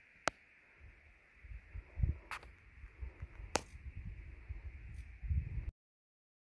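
Outdoor handheld recording with a few sharp clicks and an irregular low rumble of wind or handling on the microphone, growing from about a second and a half in. The sound cuts off abruptly near the end.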